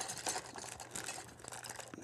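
Rummaging through a small box of drawing supplies for a blending stump: a run of light, irregular clicks and rustles as pencils and tools are moved about.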